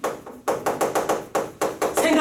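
Chalk writing on a chalkboard: a quick run of sharp taps, about five a second, as the strokes are made.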